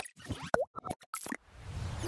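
Logo-animation sound effects: a quick run of short pops and plops with a brief boing-like blip, then a whoosh with a low rumble that swells up about a second and a half in.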